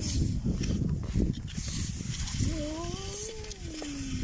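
Skis sliding and feet crunching on snow, louder in the first half. In the second half a single drawn-out voice sound, like a whine or hum, rises and then slowly falls over about a second and a half.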